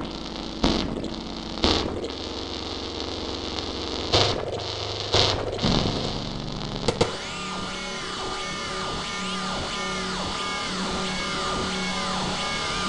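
Metamorph waveform-morphing software synthesizer playing demo presets. For the first seven seconds it makes a hissing, noisy wash broken by about five sudden loud swells. After that it changes to repeated arching pitch sweeps, rising and falling, over a pulsing low drone.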